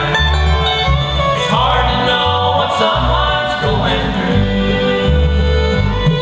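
Live bluegrass band playing an instrumental break, with the fiddle carrying a sliding melody over banjo, mandolin and acoustic guitar, and upright bass notes pulsing underneath.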